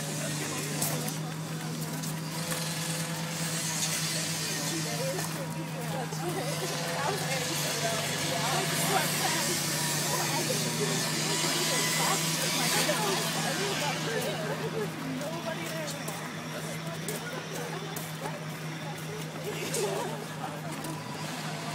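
Indistinct chatter of several people talking at once, over a steady low hum and traffic-like background noise.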